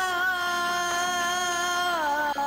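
A singing voice holding one long, steady note in a liturgical chant, slipping down in pitch at the very end.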